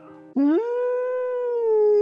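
A long canine howl, used as a horror sound effect: it swoops up in pitch about half a second in, then holds one long note that slowly sinks.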